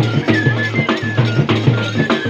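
Bhaderwahi folk music: dhol drums beating a steady rhythm of about four strokes a second over a low drone, with short high melody notes on top.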